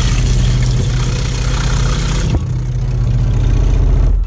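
Electric water pump running with a loud, steady hum. It is a larger, higher-pressure pump than a windscreen-washer type, and it drives water from the tap splashing into a steel sink. The hiss of the water eases off about halfway through while the pump keeps humming.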